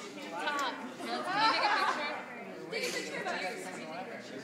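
Chatter of several people talking at once, their voices overlapping, loudest about a second and a half in.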